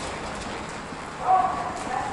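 Wheelchair rolling along a station walkway floor, a steady rumbling hiss, with a short pitched tone about a second in that is the loudest moment.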